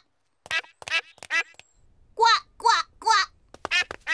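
Cartoon duck quacks in two sets of three: three short, quieter quacks in the first second and a half, then three louder ones about two seconds in.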